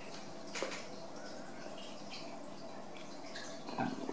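Quiet room tone with a few faint light ticks as a small metal RCA plug and its wire are handled, then louder handling noise just before the end.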